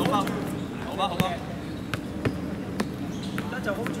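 A football striking a hard concrete court: a handful of sharp single knocks, spaced irregularly, as it is kicked and bounced.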